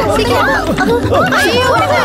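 Several voices shouting and talking over one another, with a steady low hum underneath.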